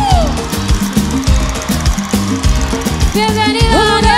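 Live salsa band playing, with percussion and bass keeping a steady beat. A woman's held sung note falls away at the start, and her voice comes back in, singing, about three seconds in.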